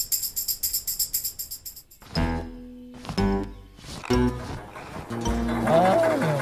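A tambourine shaken rapidly, its metal jingles rattling for about two seconds. Then a few seconds of music with sustained notes and a low bass.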